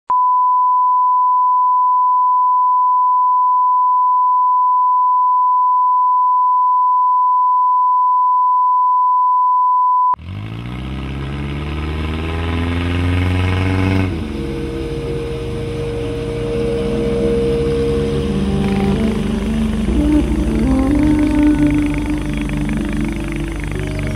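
Steady single-pitch line-up test tone, cutting off suddenly about ten seconds in; then soundtrack music of sustained tones begins and carries on.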